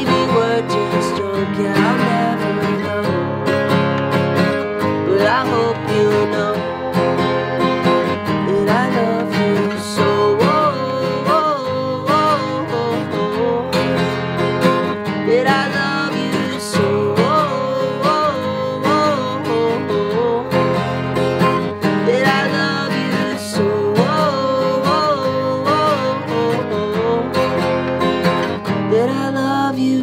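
Steel-string dreadnought acoustic guitar strummed steadily under a male voice singing a wavering melody. The song ends right at the close.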